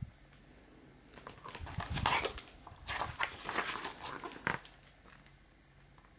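Pages of a hardcover picture book being turned and handled. A run of soft paper rustles and crinkles comes between about one and four and a half seconds in.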